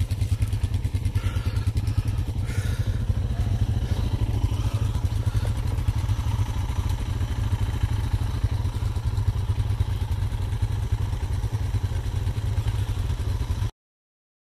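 An ATV engine running steadily close by, its exhaust a rapid, even low pulse with no change in revs. The sound cuts off suddenly near the end.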